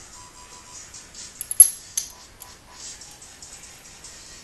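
A few sharp metallic clinks, about one and a half to two seconds in, as steel rocker arms and lifters are set by hand into an aluminium DOHC cylinder head, over quiet background music.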